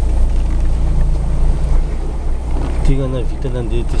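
Car engine and road rumble heard from inside the cabin while driving: a steady low drone with a level engine hum over it.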